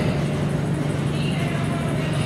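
Steady low hum of room noise in a large gym, with faint voices in the background.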